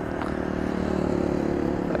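Honda CG 150 Fan's single-cylinder four-stroke engine running at low revs, a steady note that grows slightly louder.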